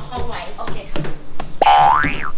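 A loud pitched sound with many closely spaced tones starts about a second and a half in. It holds briefly, then slides up and back down in pitch.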